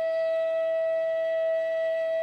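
Bansuri (Indian bamboo flute) holding one long, steady note.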